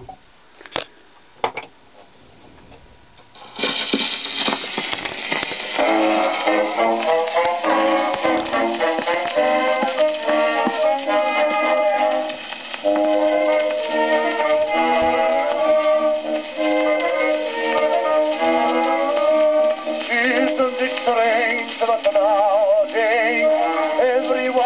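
A c.1910 Rena double-face disc record of a music hall song playing on a gramophone: a few needle clicks over a quiet groove, then about three and a half seconds in the music starts, thin, with no deep bass and no top, as on an early acoustic recording.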